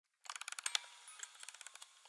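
Music box mechanism clicking rapidly as its spring is wound by ratchet. The clicks are loudest in the first half second and then go on more faintly.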